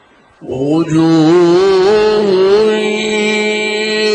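A man's voice in melodic tajwid recitation of the Qur'an: about half a second in, a long, drawn-out note begins, its pitch wavering in ornaments before it climbs and holds steady.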